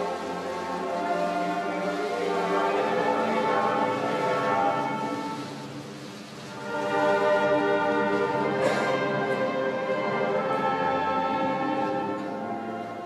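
Ceremonial orchestral music with brass playing sustained chords in two swelling phrases, the second beginning after a dip about six seconds in. A single sharp click sounds about nine seconds in.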